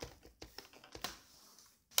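A few light plastic clicks in the first second or so as a Sony VAIO SVE17 laptop's plastic screen bezel is pressed down and its plastic clamps snap into place.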